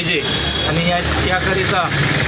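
A man talking over a steady low rumble like a vehicle engine running, which sets in about half a second in.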